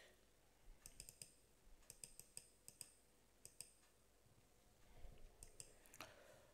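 Faint computer mouse clicks, coming in several short groups of sharp clicks through an otherwise near-silent room.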